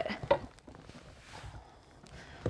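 Faint handling of a cardboard box: a couple of soft knocks and a scuff in the first half-second, then light rustling.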